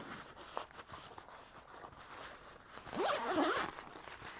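Zipper on a soft multimeter carrying case being pulled open in one short run about three seconds in, after a few faint handling rustles of the case.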